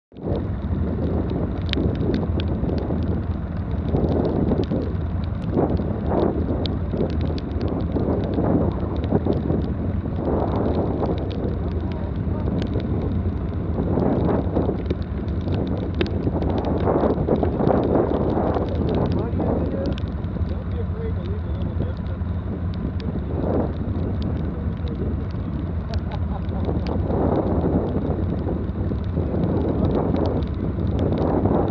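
ATV engine idling steadily while the machine stands still, with wind and rain buffeting the microphone and indistinct voices at times.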